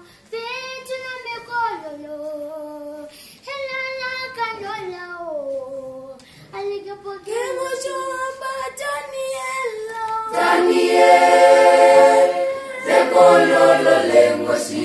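Namibian gospel song sung without instruments: a single voice sings long, gliding phrases, and about ten seconds in a choir comes in much louder on the word "Daniel".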